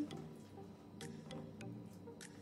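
Quiet background music with a few light, sharp ticks about a second in.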